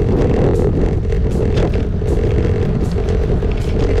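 Wind buffeting the microphone of a camera held out by a cyclist riding a road bike: a loud, steady low rumble of air noise. Background music plays under it.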